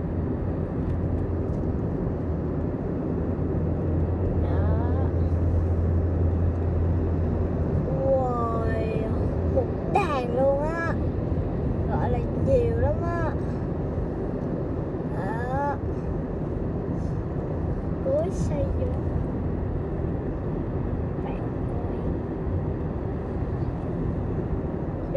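Road and engine noise inside a moving vehicle on a highway: a steady low rumble, with a low hum that eases off about eight seconds in.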